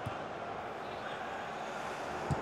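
Steady, even background ambience of a football match broadcast in an empty stadium, with one short sharp knock right at the start.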